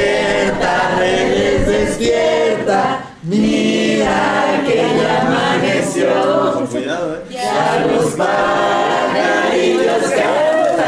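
A group of people singing together without accompaniment, in phrases broken by short pauses about three seconds in and again after seven seconds.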